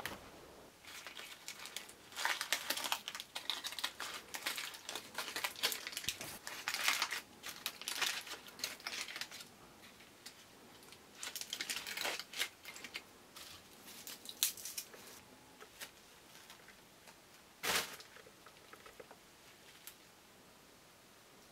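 Aluminium foil crinkling as a foil-wrapped baked potato is unwrapped by hand, in several spells of rustling with a short loud crackle near the end.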